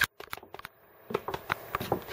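Dog claws clicking irregularly on wooden deck boards, with a brief break in the sound just under a second in.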